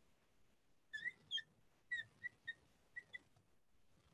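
Marker squeaking on a glass lightboard as a word is written: a series of short, faint, high squeaks between about one and three seconds in.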